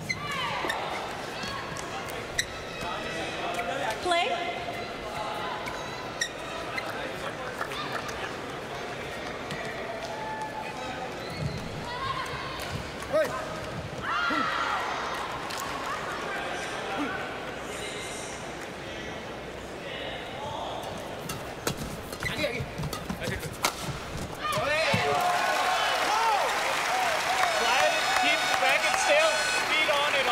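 Crowd noise in a badminton arena, with calls from the stands and a few sharp shuttlecock hits during a men's doubles rally. About 25 seconds in, the crowd breaks into loud cheering and shouting as a point is won.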